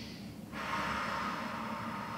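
A woman breathing deeply and audibly through a stretch. One breath fades out just after the start, and a second long breath begins about half a second in.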